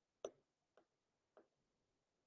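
Three faint, sharp clicks a little over half a second apart, from a stylus tapping a tablet screen while handwriting.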